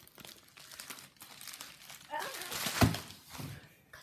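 Plastic postal mailer bag crinkling and rustling as it is handled and pulled at to get it open, with a single loud thump near three seconds in.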